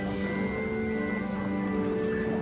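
Church music with long, steady held notes, changing pitch about once a second: the opening hymn of the Mass.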